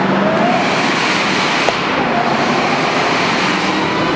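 2003 Ford Mustang Cobra's supercharged 4.6-litre V8 accelerating hard, heard from the open cabin of the convertible with the top down, largely buried under a loud steady rush of wind. A faint rising whine climbs, breaks off about two seconds in, and climbs again.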